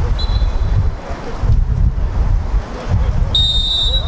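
Referee's whistle blown twice, a short blast near the start and a longer, louder blast near the end, over heavy wind buffeting the microphone.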